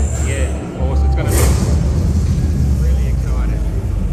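A loud, steady, deep rumble with music and faint voices over it, with a short noisy burst about one and a half seconds in.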